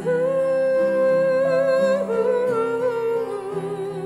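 Music: a solo voice sings a love song over instrumental accompaniment, holding one long note for about two seconds, then moving down through a few lower notes.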